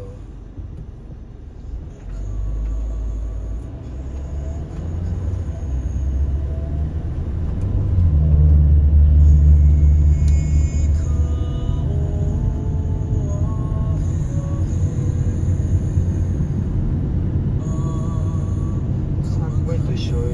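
Low rumble of a car's engine and tyres heard from inside the cabin. It swells as the car pulls away from a stop about two seconds in and picks up speed, is loudest a little before the middle, then settles into steady road noise.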